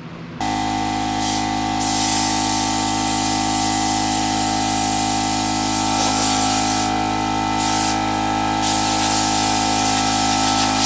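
Compressed air hissing from a blow-gun nozzle on an air hose, blowing sanding dust off a scuffed truck cap. The blast eases off briefly about a second in and twice more near the end, over a steady hum.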